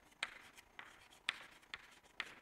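Chalk writing on a chalkboard: a few faint, irregular taps and short scratches as the chalk strokes are made.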